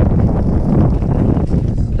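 Wind buffeting the camera's microphone: a loud, steady, low noise with no speech.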